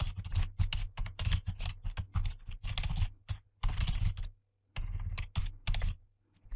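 Typing on a computer keyboard: a quick, uneven run of keystrokes with a short pause a little past the middle.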